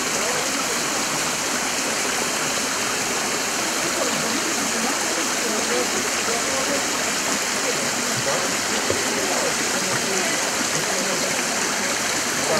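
Steady rushing and splashing of spring water falling in thin streams from a small waterfall spout onto the stones below.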